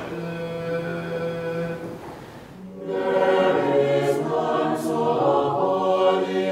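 Choir singing Orthodox funeral chant a cappella in long held notes. It thins out briefly just before the middle, then comes back fuller and louder.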